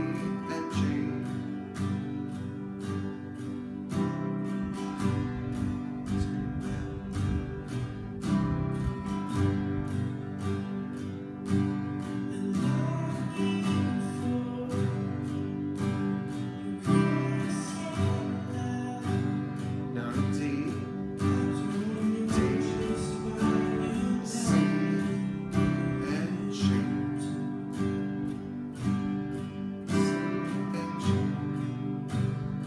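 Steel-string acoustic guitar strumming a chord progression at a slow, steady tempo.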